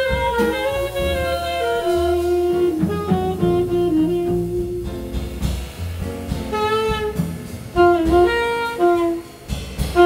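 Live jazz band: a soprano saxophone playing a melodic line over double bass and drum kit.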